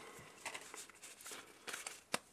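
Soft rustling and light clicks of a stack of Pokémon trading cards being handled and slid in the hands, a few faint touches spread through the moment.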